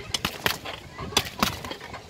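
Fists punching a freestanding boxing dummy wrapped in plastic film: a quick run of sharp smacks, two blows in quick succession early on and two more a little past the middle.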